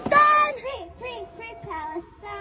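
A young girl chanting "free Palestine" into a microphone in a sing-song rhythm: loud for about the first half second, then quieter chanted voices.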